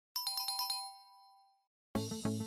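A short chime jingle: about six quick bell-like notes in well under a second, the last two tones ringing on and fading away. Music with a steady plucked beat starts right at the end.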